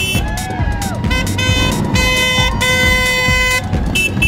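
A group of motorcycles riding slowly past with a low engine rumble, while horns honk several times, one honk held for about a second.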